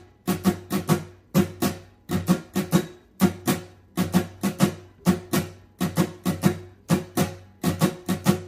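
Epiphone Masterbilt acoustic guitar, tuned down a half step to E-flat, strummed in a steady repeating pattern of open chords, about three to four strums a second.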